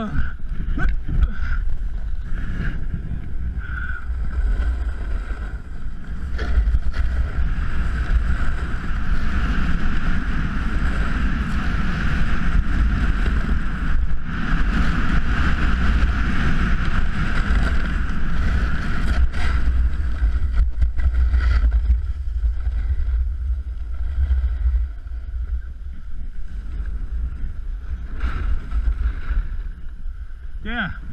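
Wind buffeting an action camera's microphone during a run down a groomed ski slope, with the hiss and scrape of snow sliding underfoot. The rush builds a few seconds in, stays loud through the middle, and eases near the end.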